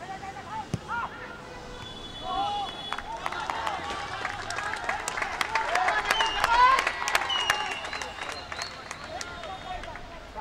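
Shouts and calls from players and a few onlookers at a football match. In the middle the shouting swells, with a quick run of claps, and peaks about six and a half seconds in before easing off.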